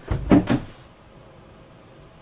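Handling noise close to the microphone: three quick knocks and bumps in the first half-second as the camera is adjusted.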